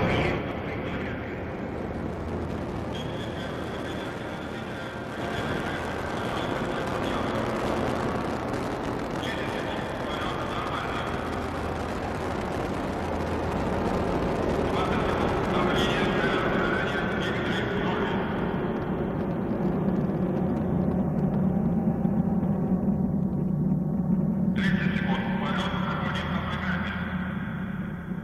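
Proton-M rocket climbing after liftoff, its engines giving a steady rumble. A voice comes through at intervals over the noise.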